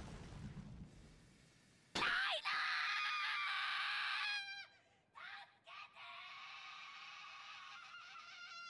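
Anime soundtrack dialogue at low level. A character yells "Reiner!" in one long, strained shout starting about two seconds in, and near the end comes a quieter call of "Help us!".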